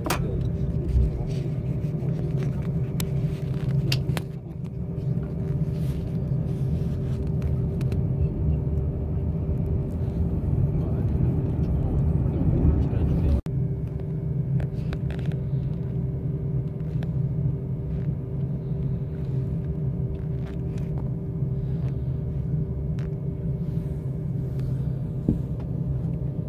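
Inside a moving Thalys high-speed train: a steady low rumble from the running gear with a held hum over it. About halfway through the sound breaks off abruptly for an instant and resumes a little changed.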